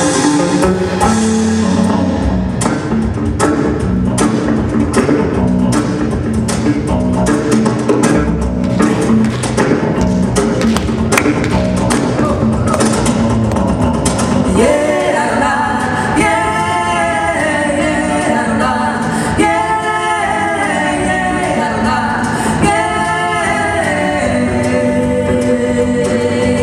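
Live bossa nova band with electric bass guitar playing a song's opening, with sharp percussive clicks through the first half. About halfway through, a woman begins singing the melody into a microphone over the band.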